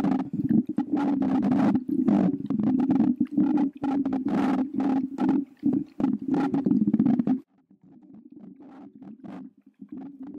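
A glass perfume bottle rubbed and tapped against a microphone grille close up: a dense, low scraping with many quick clicks. It stops suddenly about seven and a half seconds in, leaving fainter handling.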